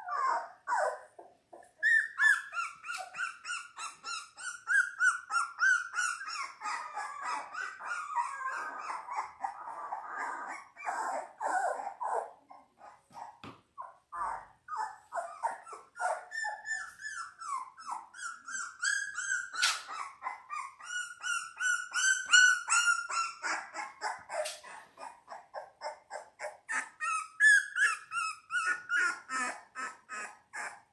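Seventeen-day-old Labrador Retriever puppies whining and squealing in rapid runs of short, high-pitched cries that bend up and down, broken by a couple of brief pauses.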